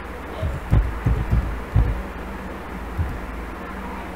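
Dull low thuds of computer keyboard keys being typed, about five quick ones in the first two seconds and one more about three seconds in, over a steady low hum.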